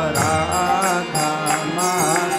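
A man chanting a devotional mantra in a sung melody, keeping time on karatals, small brass hand cymbals, struck about three times a second.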